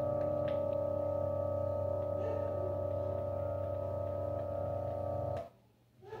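A strange-sounding 'space sound' presented as Jupiter's moon Amalthea: a steady drone of several held tones, low and middle, at an even level, which cuts off abruptly about five and a half seconds in.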